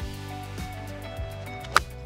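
Background music with a steady beat. Near the end, a single sharp click: a lob wedge striking a teed golf ball.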